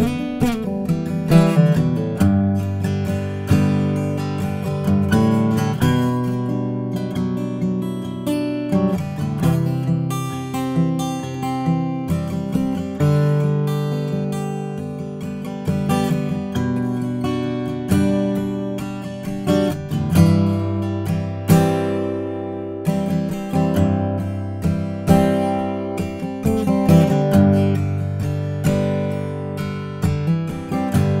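Solo acoustic guitar, chords strummed and picked in a steady flow of plucked notes, with no voice: an instrumental passage of a folk song.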